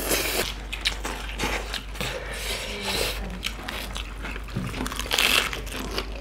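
Eating sounds: chewing and crunching raw cabbage leaves, with hands squishing and mixing curry and rice. The sound is an irregular run of short clicks and crunches.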